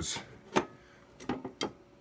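A few light clicks and knocks from handling the equipment: one about half a second in and a quick cluster of three near the end.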